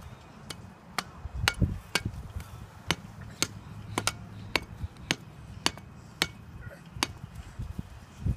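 Sharp knocks repeating at an even pace, about two a second, like hammering.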